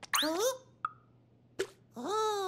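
Cartoon sound effects: a short rising bloop near the start, then a single light plop about a second in and a fainter tick shortly after.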